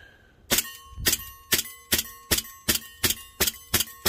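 .177 John Wayne commemorative 1911 BB pistol fired rapidly, about nine shots at roughly two a second, starting about half a second in. Each shot is followed by the steel stop-sign target ringing, a steady ring that carries on between shots.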